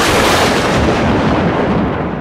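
A loud rumbling crash that starts suddenly and slowly fades away, added as a sound effect.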